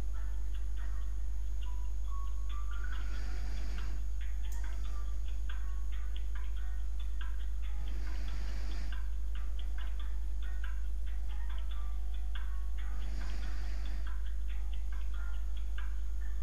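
Steady low hum under a rapid, irregular run of small ticks. A person breathes near the microphone three times, about five seconds apart.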